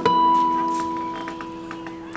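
Amplified classical guitar: a chord with a bright, bell-like high note is plucked and left ringing, fading away over two seconds, with a few faint clicks.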